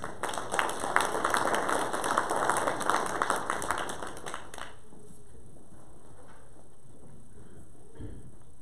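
Congregation applauding: a dense patter of hand claps that starts right as the music ends and stops abruptly about halfway through, followed by quiet room noise.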